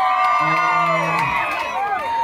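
Club crowd, many of them young women, screaming and cheering with long high-pitched shrieks that tail off near the end. A man's voice joins briefly in the middle.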